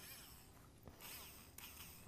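Near silence: room tone, with one faint tap about a second in.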